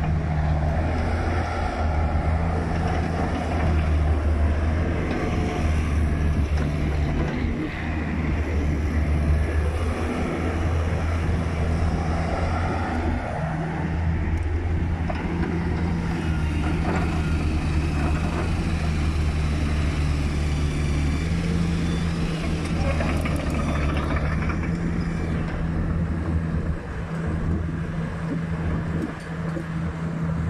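Kubota KX161-3SZ mini excavator's diesel engine running steadily under hydraulic load as the machine slews and works its boom, arm and bucket. The engine note dips briefly a few times as the load changes.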